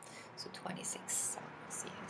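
A woman speaking softly under her breath, half-whispered, with hissy consonant sounds and little voiced tone.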